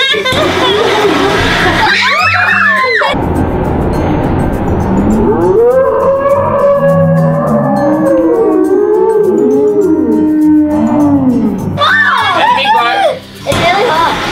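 Children shrieking and laughing. About three seconds in it cuts to deep, drawn-out, slowed-down voices, as in a slow-motion replay, then the normal-speed shrieks return near the end. Background music plays underneath.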